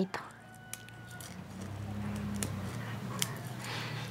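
Fingers peeling the papery skin off a garlic clove, giving a few faint crackling ticks. Under them is a low steady hum that swells about a second and a half in and then holds.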